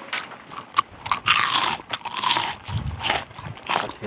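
Crunchy food chewed close to the microphone, with irregular crunches and clicks.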